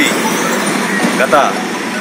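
A man speaking Telugu: a short pause, then one brief word about halfway through, over steady background noise.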